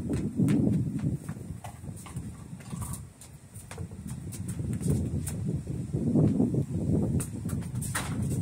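A soccer ball is kicked and bounces on a concrete patio, with quick knocks and the scuff of sneakers running and stepping. Under these a low rumbling noise comes and goes, loudest near the start and again around six seconds in.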